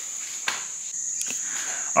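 A steady high-pitched tone, with one sharp click about half a second in and a few faint ticks.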